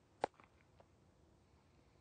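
A single sharp smack about a quarter second in, followed by a few faint clicks, over quiet outdoor ambience.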